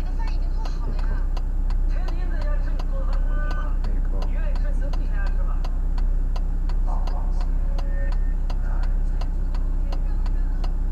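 Car turn-signal indicator ticking steadily, about three clicks a second, over the low hum of the idling engine.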